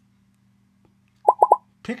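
ZooBurst app's pop-up sound effect as the 3-D book's cut-out pictures spring up from the page: three quick pitched pops in rapid succession, a little past a second in, over a faint steady hum.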